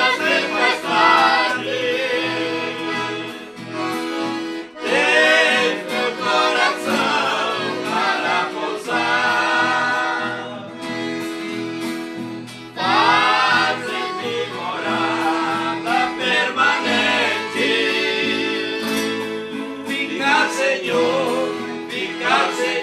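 Several men singing a hymn together in harmony, accompanied by two strummed acoustic guitars and a piano accordion.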